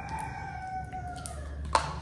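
A drawn-out call in the background, falling slowly in pitch and fading out after about a second and a half, over a low steady hum. A single sharp click comes near the end.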